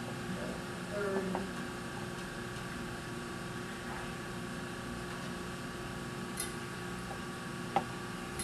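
Quiet room with a steady electrical hum while a portable CD stereo is cued up, with a few faint handling ticks and one sharp click near the end.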